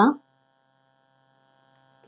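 A woman's voice trailing off, then near silence with a faint steady electrical hum.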